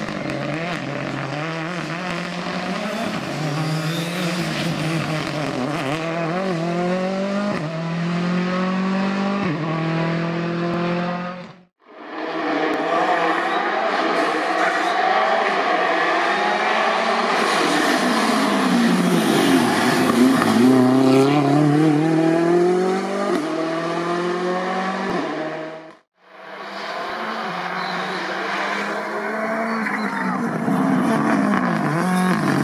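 Ford Fiesta R5 rally car's turbocharged 1.6-litre four-cylinder engine at full throttle, its pitch climbing and dropping back with each quick upshift. In a second pass it falls in pitch as the car slows, then climbs again as it accelerates away. The sound breaks off abruptly twice between passes.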